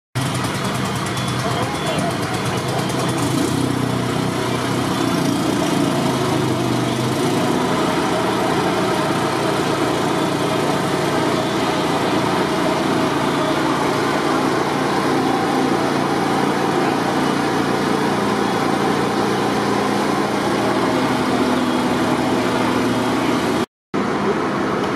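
Fire engines' motors running steadily under a dense, even rushing noise. The sound cuts out for a moment near the end.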